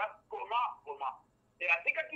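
Speech only: a person talking in quick phrases, the voice thin and narrow, like a telephone line.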